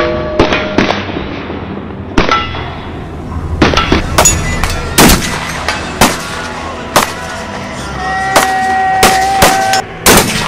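Barrett M82A1 semi-automatic .50 BMG rifle firing a string of heavy, very loud shots, the loudest about a second apart through the middle. Other shots on the range mix in.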